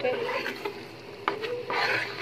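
Steel spoon stirring and scraping thick besan (gram flour) frying in ghee in a steel pan, the flour fully roasted. A couple of short sharp clicks of the spoon come about halfway through.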